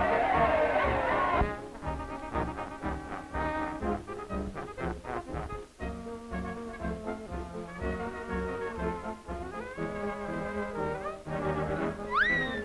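Orchestral cartoon score with brass, led by trombone, playing a bouncy tune over a steady beat. For about the first second and a half a loud crowd yell runs over the music, then cuts off.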